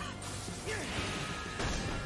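Anime episode soundtrack playing at a moderate level: dramatic background music mixed with battle sound effects such as crashes and impacts.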